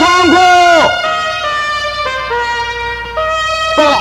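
Film soundtrack: voices sounding for about the first second, then a trumpet playing slow, held notes that step up and down, with a short louder swell just before the end.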